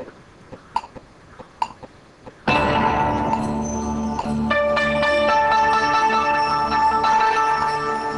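Korg M3 workstation's count-in clicks, evenly spaced under a second apart. About two and a half seconds in, a loud combi patch comes in: a dense, sustained chord of many held tones, with new notes added a few seconds later as it is played.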